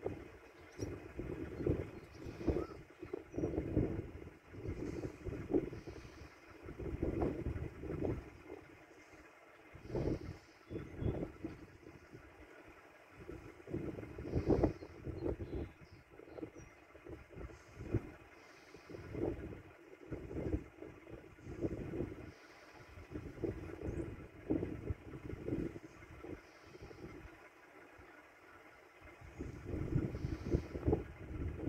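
Wind buffeting the phone's microphone in irregular gusts, over the steady running of a parked car's idling engine.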